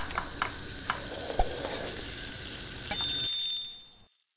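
Sound effect of food sizzling in a hot pan, a steady hiss with a few sharp pops, accompanying an animated logo. About three seconds in, a bright bell-like ding rings and fades away.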